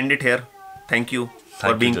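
Men talking in Hindi and English. In a brief pause about half a second in, a short, faint call or squeak holds one steady pitch.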